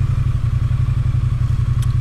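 Triumph Bonneville T100 parallel-twin engine running at low speed, a steady low, pulsing note picked up on the bike, with light wind hiss.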